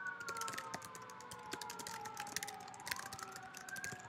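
An emergency vehicle siren wails in slow sweeps. Its pitch falls gradually and then rises again near the end, over the rapid clicking of computer keys being typed.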